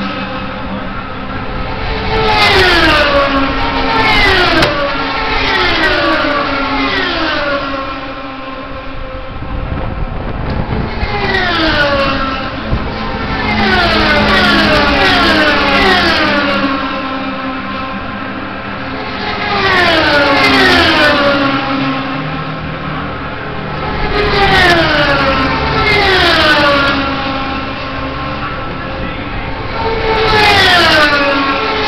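Indy cars, Honda 3.5-litre V8s, screaming past one after another at speed, each high engine note dropping sharply in pitch as it goes by. They come in bunches of three or four cars about a second and a half apart, with gaps of a few seconds between bunches.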